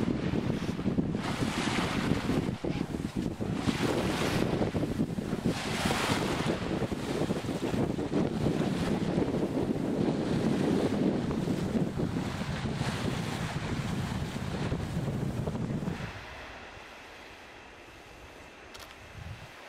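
Wind buffeting the microphone over the wash of waves aboard a sailboat under way in a fresh breeze, with louder gusts in the first few seconds. Near the end it drops away suddenly to a much quieter hush.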